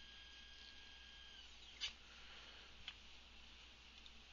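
Faint steady whine of unloaded stepper motors, bolted to a steel plate, driving the machine's axes back to zero. The whine slides down in pitch and stops about a second and a half in as the axes arrive. Two faint clicks follow.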